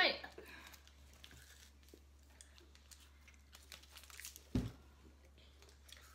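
Faint crinkling and tearing of a candy-bar wrapper being handled and opened, with a single low thump about four and a half seconds in.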